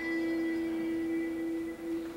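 Live music: one long held note with overtones that stops shortly before the end.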